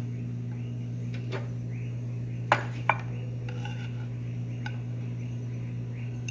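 Steel knife and fork clinking while carving pork on a wooden board, with two sharp clinks about halfway through. A steady low hum runs underneath.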